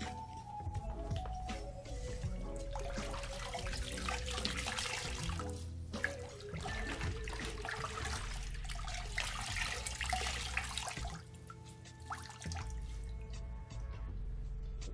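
Water sloshing and splashing in a bucket as dirty Fluval canister-filter foam pads are swished around in it by hand to rinse them clean, in two long bouts about three seconds and five seconds in. Background music plays throughout.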